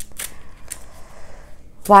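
Tarot cards being handled: three light, sharp card clicks in the first second, then a soft sliding rustle, before a voice starts near the end.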